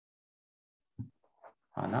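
About a second of dead silence on the call, then a short low vocal sound from a person, and a man's voice starting to speak near the end.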